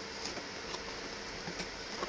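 Faint steady hiss of room noise, with a few soft clicks from hands handling a cardboard phone box.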